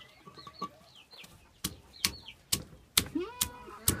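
A hand stone knocking down onto green jocotes on a stone grinding slab, crushing them: about six sharp knocks, roughly two a second, in the second half. Chickens call faintly in the background.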